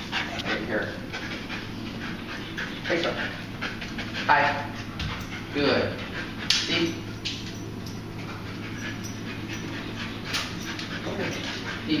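Explosive-detection dog panting and sniffing as it works a search on the leash, with a couple of brief pitched sounds about four and six seconds in.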